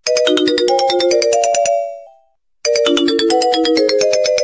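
A bright, bell-like electronic ringtone melody of quick repeated notes. It plays one phrase that fades out about two seconds in, then starts again after a brief silence.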